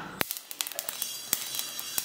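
Mustard seeds dry-roasting in a steel pan, crackling in scattered sharp pops over a faint hiss.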